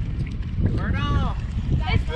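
Wind buffeting the microphone with a low rumble throughout. About halfway through comes a single drawn-out call, lasting about a second, that rises then falls in pitch.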